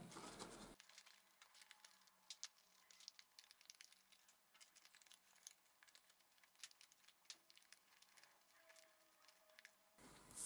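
Near silence, with a few faint clicks and crinkles of thin cardboard as die-cut hexagons are pressed out of a printed card sheet.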